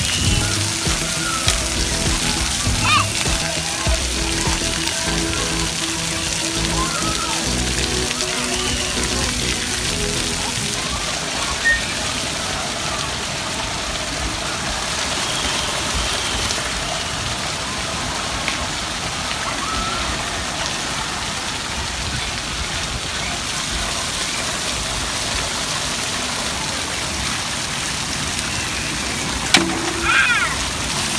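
Steady rushing hiss of splash-pad water spouts and sprays pouring into basins. Music plays for about the first ten seconds, and faint voices come and go.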